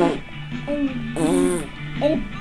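A young girl singing a wordless tune in short held notes, very close to the camera's microphone.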